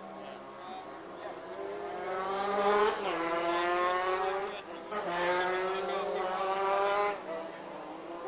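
A kart's two-stroke engine running out on the track, its pitch climbing as it accelerates, falling back suddenly and climbing again, three times over.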